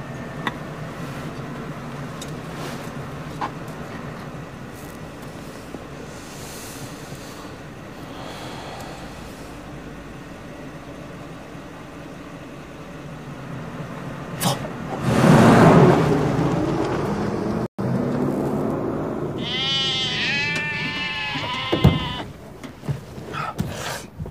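A vehicle engine idling steadily, with a loud surge about fifteen seconds in. Near the end comes a quick run of wavering bleats from sheep or goats.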